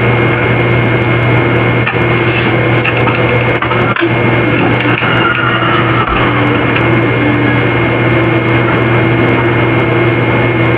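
A loud, steady hum under a dense hiss, with faint wavering tones through it.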